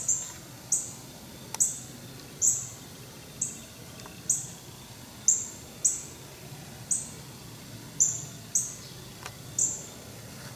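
A bird giving short, sharp, high-pitched chip notes over and over, about one or two a second at an uneven pace, over a faint steady background hum.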